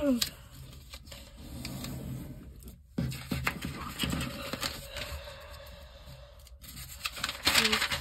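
A sheet of paper rustling and being creased as it is folded lengthwise by hand against a wooden tabletop, with a few light taps a few seconds in and a louder rustle near the end. A throat clear at the start.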